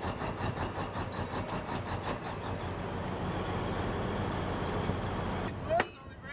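Heavy V-12 twin-turbo diesel of an M88A2 Hercules recovery vehicle running, a steady rumble with a rapid, even clatter of about eight ticks a second that fades away about halfway through. Near the end a short sound rises sharply in pitch, and then the sound cuts off suddenly.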